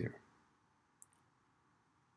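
Two quick, faint clicks about a second in, a tenth of a second apart, from computer keyboard keys during typing.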